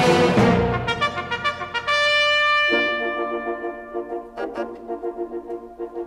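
Brass-led orchestral film music: a loud full chord at the start, then quick repeated notes and held brass notes in the middle, thinning to a quieter run of short repeated notes, about five a second, near the end.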